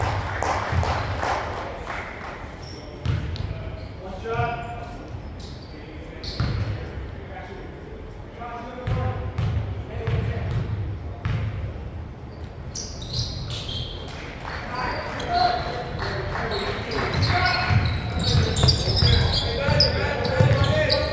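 Basketball bouncing on a hardwood gym floor, several separate bounces ringing around the hall, with voices from players and spectators echoing; the activity gets busier in the last several seconds.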